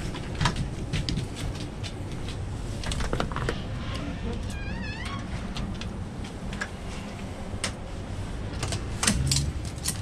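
Household doors being opened to let dogs out: handles and latches clicking, with the dogs' claws clicking and scrabbling on the hard floor. There is a brief wavering squeal about halfway, and a louder clatter near the end as the storm door swings open.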